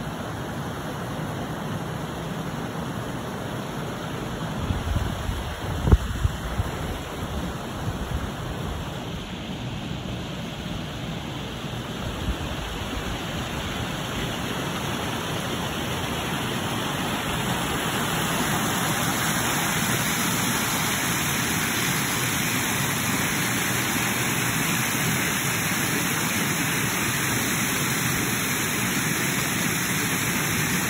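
Steady rushing of water running over a small stone spillway, growing louder about halfway through and holding there. A few low thumps on the microphone about a fifth of the way in, and one more a little later.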